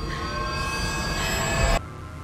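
A screeching horror stinger: many high, shrill tones sound together and slide about, swelling louder, then cut off suddenly near the end.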